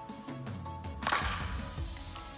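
Background music with steady tones, cut by one sharp crack about a second in: a softball bat hitting a pitched ball.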